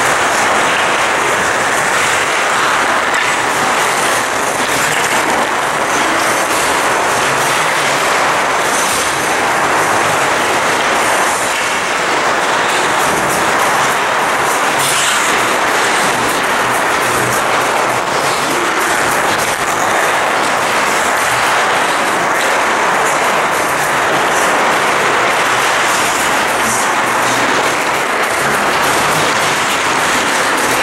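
Ice rink noise during a hockey drill: a loud, steady rush with many short scrapes of skate blades cutting the ice.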